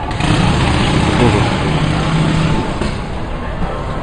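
A motor vehicle's engine running as road traffic passes, its low hum dying away after about two and a half seconds, over general street noise.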